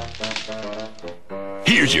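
Cartoon background music with a quick run of sharp clicks, small gold nuggets clinking as they are dropped into a hand. A man's voice starts near the end.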